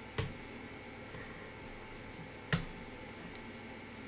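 Two sharp computer mouse clicks about two seconds apart, over a faint steady room hiss.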